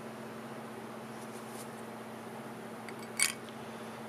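Steady low workshop hum with one sharp click about three seconds in.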